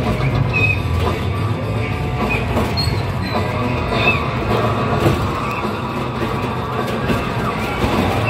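Roller coaster motion-simulator ride soundtrack: music over a steady low rumble of a coaster train running on its track.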